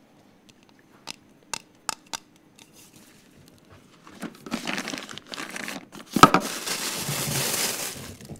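Four sharp taps in the first couple of seconds. Then plastic bags crinkling and rustling as a hand rummages in a wooden drawer, with one loud knock about six seconds in.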